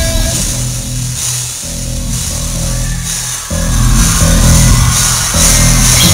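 Live rock band playing amplified electric guitars, bass and drums, heard loud from within the audience. The music drops back to a thinner passage for a couple of seconds, then the full band comes back in hard about three and a half seconds in.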